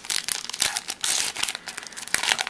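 Foil Pokémon card booster pack wrapper being torn open by hand, crinkling in a quick, irregular run of crackles.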